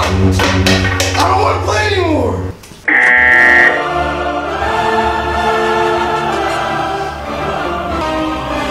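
Edited-in soundtrack music: sharp hits and a falling pitch glide in the first two seconds, a short bright buzzer-like tone about three seconds in, then held chords that sound sung by a choir.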